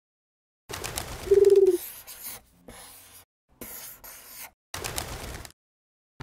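A single short dove coo about a second in, the loudest sound. Around it are several separate bursts of paper rustling as the pages of a large book are turned.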